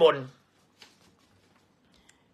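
A man's spoken word ends just at the start, then a brief, faint rustle of an old paper leaflet being handled about a second in.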